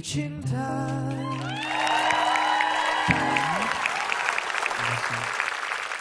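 A male singer's song with acoustic guitar ends on a held final note and chord, which dies away about three and a half seconds in. Studio audience applause swells under it from about two seconds in and carries on.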